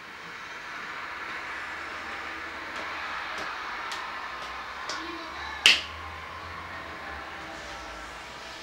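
A single loud, sharp click a little past two-thirds of the way through, after several fainter clicks, over a steady rushing background noise.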